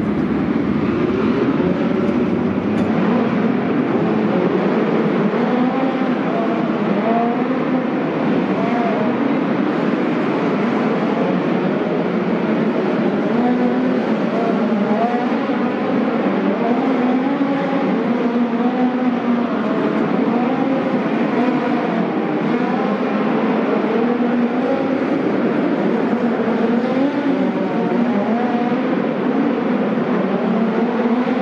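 Several midget race car engines running practice laps on the track, a steady loud din whose pitch keeps rising and falling as the cars throttle up and lift around the track.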